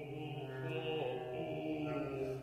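Vocal ensemble holding sustained, chant-like tones in several parts over a steady low note, with one small bend in pitch about a second in; contemporary music for seven voices and bass clarinet.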